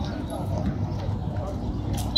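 A low steady rumble with indistinct voices.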